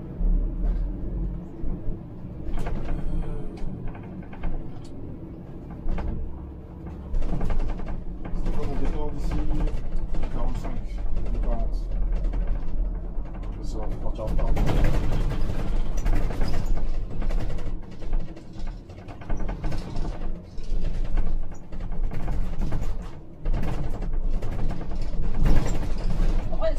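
Cabin sound of a Scania Citywide articulated CNG bus on the move: a low engine and road rumble that swells and eases with the driving, with frequent knocks and rattles from the bodywork.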